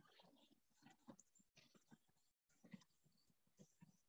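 Near silence, with a few faint, short ticks from a stylus tapping and writing on a tablet.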